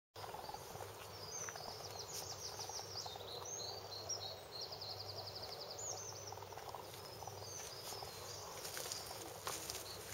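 Small songbird singing faintly, a series of high chirps and a quick trill over a steady low background hum. Scratchy rustling comes in near the end.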